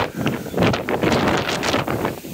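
Strong wind buffeting the microphone in loud, uneven gusts.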